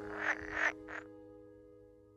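Male pool frog (Pelophylax lessonae) giving its chattering call with vocal sacs inflated: three short bursts in the first second, the last one shortest.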